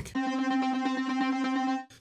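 Alchemy synth lead patch played through Logic Pro X's Arpeggiator at a 16th-note rate, repeating one held note quickly because there is only a single note to arpeggiate. It cuts off suddenly just before the end.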